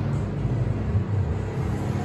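Ceiling fan running, a steady low rumble, under muffled background music with a bass line.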